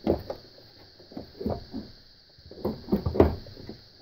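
Front panel of a 1934 BC-157-A radio being pushed back into its case, giving a string of short knocks and clicks as it catches and will not seat; the sharpest knock comes about three seconds in.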